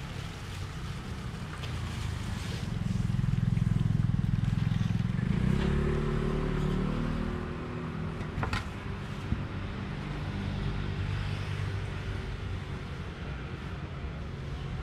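A motor vehicle's engine running close by: a low hum that swells to its loudest around four seconds in, shifts in pitch, then eases off. A single sharp click or tap comes a little after eight seconds.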